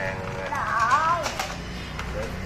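A young child's high-pitched voice, one wavering vocal sound about half a second in lasting well under a second, followed by a light click or two from handling a plastic toy.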